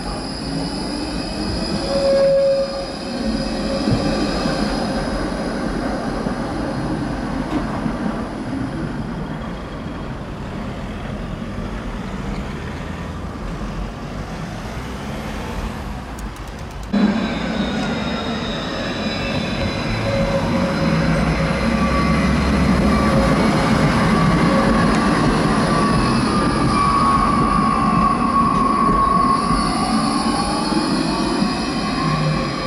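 Low-floor electric trams running on curved track, with a low rumble and drawn-out high-pitched wheel squeal. The sound changes abruptly about halfway through, then a tram passes close and its wheel squeal grows loudest near the end.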